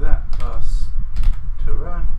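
Computer keyboard typing: a short run of keystrokes, with a man's voice murmuring under it near the start and near the end.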